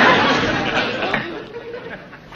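Studio audience laughing, the laughter dying away about a second and a half in.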